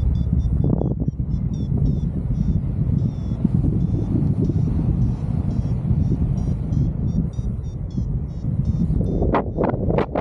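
Airflow buffeting the camera microphone in flight, with a paragliding variometer beeping in short, rapid, high-pitched tones, signalling climb in lift. The beeping stops near the end, where a few louder gusts of wind hit the microphone.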